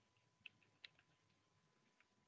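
Near silence broken by a couple of faint clicks of computer keyboard keys, about half a second and a second in, over a faint steady high tone.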